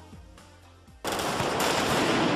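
The pop song's backing music, quiet and fading, then about a second in a sudden loud burst of rapid gunfire from a firing squad's rifles, crackling on densely.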